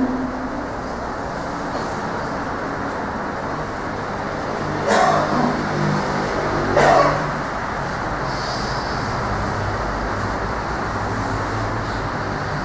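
Steady background noise of a hall, a continuous hum and hiss with no speech, broken by two short louder sounds about five and seven seconds in.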